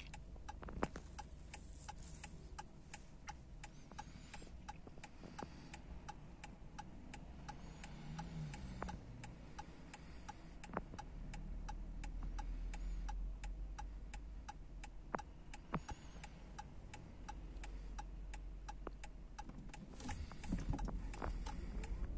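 Car turn-signal indicator ticking steadily, a few clicks a second, while the car waits at a red light to turn left, over a low cabin rumble with a few louder isolated clicks.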